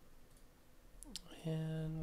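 A computer mouse clicks about a second in, with a second click just after it. A voice then holds a drawn-out filler sound at one steady pitch.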